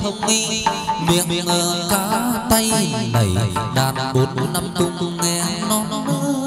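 Hát văn (chầu văn) ritual music: a plucked string melody with sliding notes over a quick run of percussion strokes.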